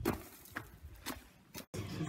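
A few faint thumps of a boy's sneakers landing on a concrete floor as he jumps, about half a second apart, then the sound cuts out abruptly.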